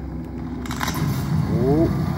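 Film soundtrack playing from a television and picked up across the room: a steady low rumble, with a short noisy burst about two-thirds of a second in and a brief rising sound near the end.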